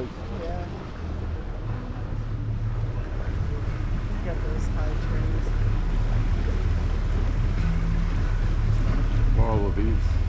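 A motorboat's engine running steadily at slow cruising speed, a low hum under wind noise on the microphone, growing gradually louder.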